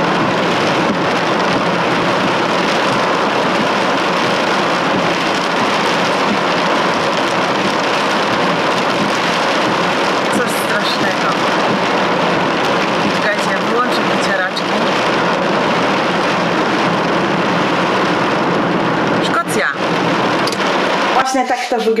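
Heavy cloudburst rain falling on the roof and windows of a car, heard from inside the cabin: a loud, steady hiss that stops abruptly near the end.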